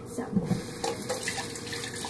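Steady hiss of running water, like a kitchen tap, with a few faint knocks over a low steady hum.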